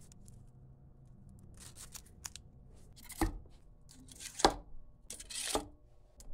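Handling sounds: a few sharp knocks and rustles as paper-wrapped ball shells are dropped into the black tubes of a wooden shell rack. The loudest knock comes about halfway through, followed by a short rustle.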